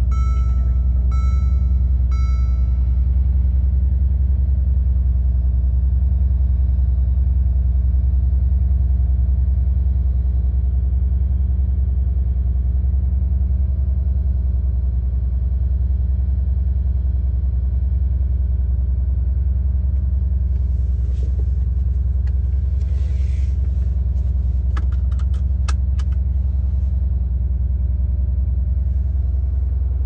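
2017 Mercedes-AMG G63's twin-turbo 5.5-litre V8 idling steadily in Park shortly after a cold start, a deep even rumble. Short beeps repeat about twice a second over the first three seconds, and a few clicks and rustles come about twenty seconds in.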